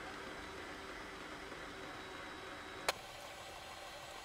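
Stand mixer running steadily, mixing cake batter, heard as a faint, even whir, with a single sharp click about three seconds in.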